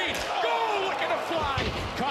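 A wrestler's superkick landing with a sharp smack, then a heavy body thudding onto the ring canvas near the end.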